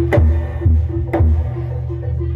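Javanese jaranan accompaniment music played loud: sharp drum strokes about twice a second over a steady low bass drone and a held tone.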